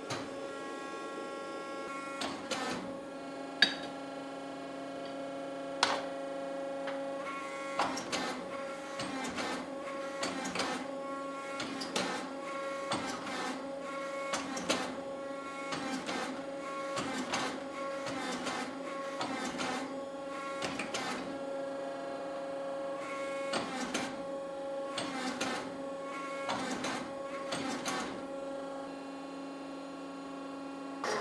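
Forging press running with a steady hum that strengthens and weakens as it loads, over irregular sharp knocks as the dies squeeze red-hot axe steel to draw out the beard of a sloyd axe.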